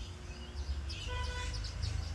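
Birds chirping quietly in the background with short, separate chirps, over a low steady rumble. A brief steady pitched tone sounds about a second in.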